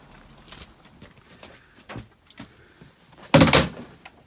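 A shed door banging loudly about three and a half seconds in, after a few light knocks.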